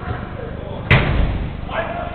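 A football hit hard once: a single sharp bang just under a second in that rings on in the large indoor hall. A man's shout follows near the end.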